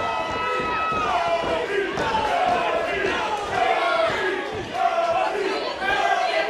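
A wrestling crowd in a hall shouting and yelling at the action in the ring. One long held shout stops about a second in, and after it come many overlapping short yells.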